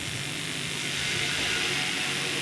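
Steady hiss with a low hum underneath and no speech: the background noise of the recording and microphone.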